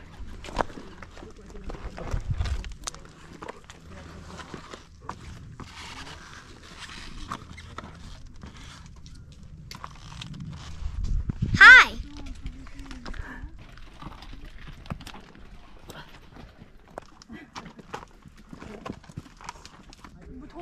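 Shoes stepping and scuffing on loose limestone rock as hikers scramble up a steep rocky trail, with many sharp irregular clicks and a couple of low rumbles. About twelve seconds in comes one short, loud vocal cry that rises and falls in pitch.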